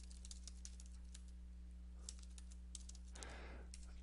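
Faint typing on a computer keyboard, a quick, uneven run of key clicks, over a low steady hum.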